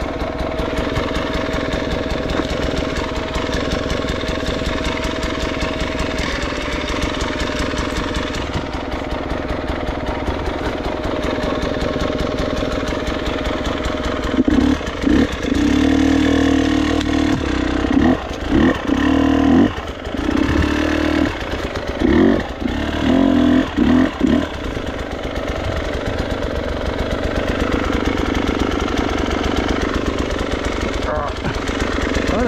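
Off-road motorcycle engine idling with a steady beat, then revved in a string of short, loud throttle blips for about ten seconds midway as the bike is worked up against a fallen log, before dropping back to idle.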